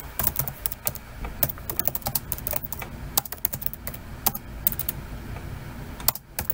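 Typing on a computer keyboard: an irregular run of quick key clicks as a short phrase is entered into a spreadsheet cell.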